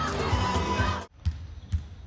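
Music that cuts off abruptly about a second in. After it, a volleyball is bounced on the hard court floor, making a few low thuds in a quiet hall.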